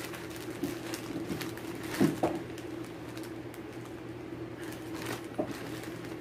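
Faint handling noises, a few soft clicks and rustles, as cross-stitch projects and fabric are sorted through by hand, over a steady low hum.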